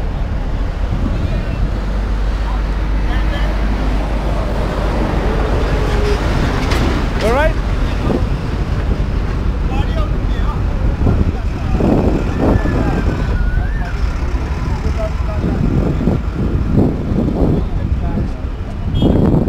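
Busy roadside: a steady low rumble of motor traffic and engines, with people talking nearby and a short rising tone about seven seconds in.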